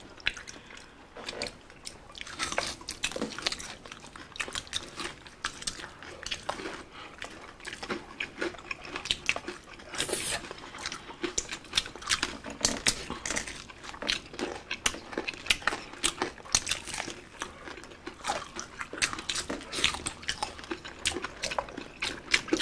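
Close-up eating sounds of people biting and chewing crispy bagnet, deep-fried pork belly, by hand: a steady run of short crunches and wet chewing clicks, with one louder, brighter crunch about ten seconds in.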